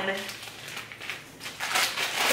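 Crinkling and rustling of a clear plastic package being handled as a small item is slid back into it, irregular and crackly, picking up a little near the end.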